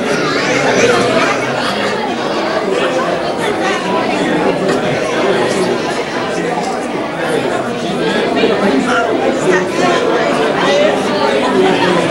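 Crowd chatter: many people talking at once, a steady hubbub of overlapping voices in a large room.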